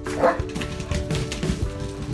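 A dog's short, high yip about a quarter of a second in, over background music with steady held notes.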